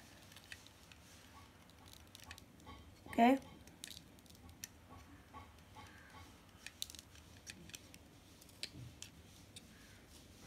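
Faint, irregular scrapes and ticks of a utility cutter blade shaving the graphite tip of a pencil with light strokes.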